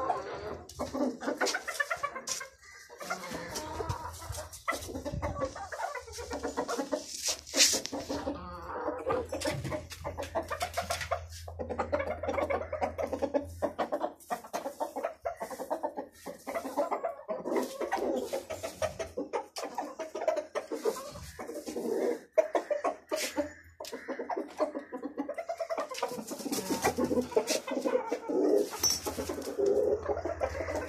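Aseel chickens, roosters and hens, clucking continuously, with sharp clicks and knocks now and then.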